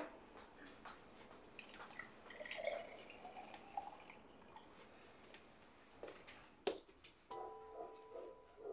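Faint juice pouring and dripping from a glass pitcher into a glass. Later there is a single sharp click, and soft held musical notes begin near the end.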